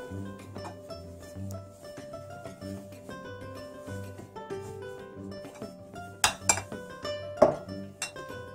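Background music with a steady beat. Near the end, glass jars clink sharply about three times as they are lifted out of a cloth and set down upside down on a granite countertop.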